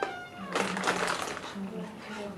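Thin Bible pages rustling as they are leafed through, with a short high pitched call right at the start.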